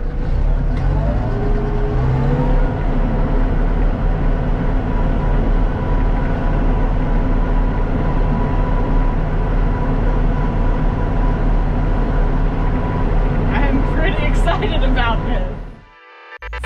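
Small tractor's engine running steadily, heard from inside the cab as the tractor drives along, its pitch rising about a second in as it gets under way. A faint steady whine sits over the rumble, and near the end a few voice-like sounds come in before everything fades out.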